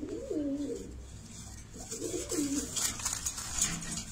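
Domestic pigeon cooing: two short coo phrases, one at the start and one about two seconds in. Near the end comes a burst of scratchy rustling, as the pigeons move about on the cage's metal grate.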